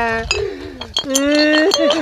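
A man's voice wailing in long, drawn-out held cries that trail off and fall, then start again about a second in, with a sharp clink of glass bottles in the middle.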